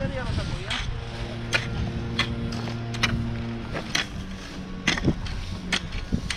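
Metal blade of a long-handled garden hoe scraping and clinking through gravel and dirt, a string of sharp scrapes. Under it a steady motor hum drops to a lower tone about halfway through.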